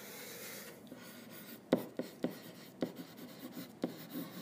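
Stylus writing a word on a tablet: faint scratching with a handful of short taps in the second half as the strokes are put down.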